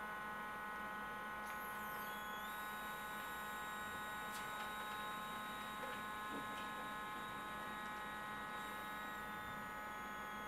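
Faint steady electrical hum from a running medical ozone generator, buzzy with many overtones. A faint high whine joins about two and a half seconds in.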